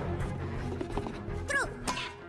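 Cartoon soundtrack: background music under the minions' high-pitched gibberish voices. A falling cry comes about one and a half seconds in, and a sharp knock follows near the end.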